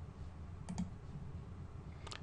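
Two faint clicks close together, just under a second in, over a low steady hum.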